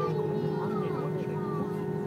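Airbus airliner's jet engines at low power while taxiing, heard inside the cabin: a steady hum with a constant whine. Passengers' voices murmur faintly underneath.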